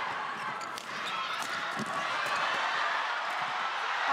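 Badminton rackets striking a shuttlecock in a fast rally, a series of sharp clicks, with brief shoe squeaks on the court over a steady crowd hum.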